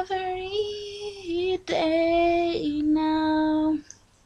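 A woman singing unaccompanied, holding a few long notes that step down in pitch, the voice stopping shortly before the end.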